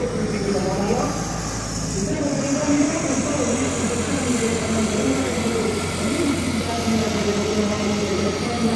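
Turbodiesel engine of a drag-prepared VW Golf TDI running at low revs as the car rolls up to the start line, with voices in the background.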